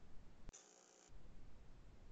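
Near silence: faint low room noise on an open microphone, with one faint click about half a second in.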